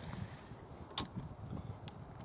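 Steel tape measure being drawn out over a plywood tabletop: two sharp clicks about a second apart over a low background rumble.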